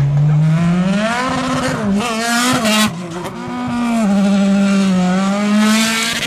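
Open-wheel single-seater race car's engine revving hard, its note climbing, dropping and climbing again several times as the throttle is worked, then rising slowly near the end.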